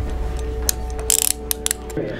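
Steel handcuffs ratcheting: a run of sharp clicks as the pawl passes over the teeth, starting about a third of the way in, with the loudest cluster in the middle.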